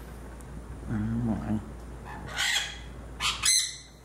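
A parrot gives two short, harsh squawks, the first about two seconds in and the second, louder and brighter, near the end.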